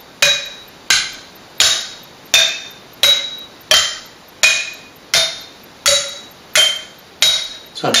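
Glass jam jars and mugs struck with sticks in a steady beat, about three strokes every two seconds. Each stroke is a sharp clink with a short glassy ring, and the pitch changes from stroke to stroke. The right hand cycles in threes and the left in fours on the same beat: a 3-against-4 beat-preserving polymeter.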